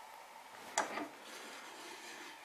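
Quiet room tone with one short, light click about three-quarters of a second in, and a fainter tick just after.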